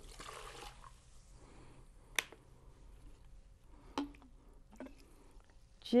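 Water poured from a glass into a drip coffee maker's reservoir: a short splash in the first second, then faint trickling and dripping. A sharp click about two seconds in and a couple of softer knocks later.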